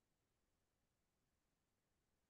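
Near silence: a faint, even noise floor with no distinct sound.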